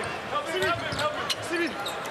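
Basketball dribbled on a hardwood court, a few sharp bounces, over steady arena crowd noise with scattered voices.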